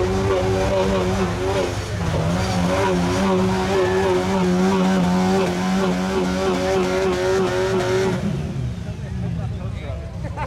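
Jeep Wrangler YJ engine held at high revs while the tyres spin in deep mud, the Jeep bogged down. The revs sag and waver about two seconds in, climb back and hold steady, then the driver lets off sharply about eight seconds in.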